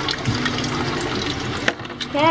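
Kitchen tap running steadily into a sink while mussels are scrubbed under the stream with steel-wool scourers. There is one sharp click near the end.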